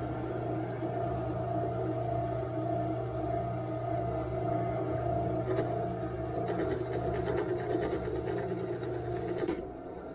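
Drill press motor running steadily with an end mill plunging into a metal workpiece, with a faint scratchy cutting noise in the middle. A sharp click comes near the end, and the sound is then a little quieter.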